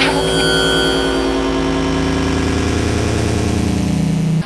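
A loud, steady electronic buzzing drone with several held tones, laid in as a warning sound effect; it starts abruptly and does not change.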